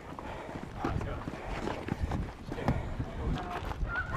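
Soldiers' boots moving quickly over hard, dusty ground, an irregular patter of footfalls with equipment knocking and rattling, and faint voices in the distance.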